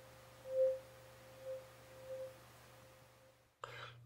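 A 524 Hz tuning fork sounding one steady pure tone at the mouth of a closed-end tube. The note swells loudly about half a second in and twice more, more weakly, as the air column in the tube comes into resonance, then fades away.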